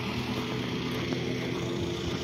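Steady street background noise with a low engine hum running evenly throughout.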